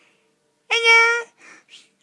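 A high-pitched, meow-like cry held on one pitch for about half a second, a little under a second in, followed by two short faint sounds.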